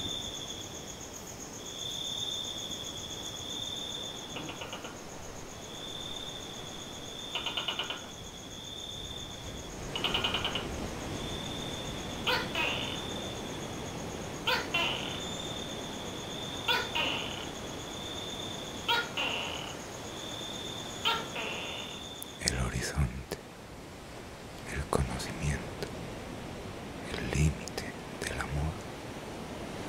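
A night insect trilling high and steady, in pulses of about a second and a half repeating every two seconds. From about ten seconds in, short sounds join it every couple of seconds. It stops about three-quarters of the way through, giving way to a low rumble of wind.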